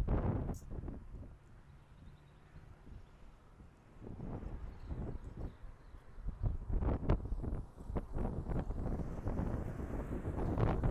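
Wind buffeting the microphone. From about four seconds in, irregular scuffs and crunches of footsteps on dry dirt come through the wind.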